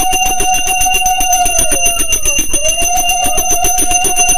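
Brass puja hand bell rung rapidly and continuously during an aarti, with a long blown note, that of a conch shell, that dies away about halfway through and then starts again.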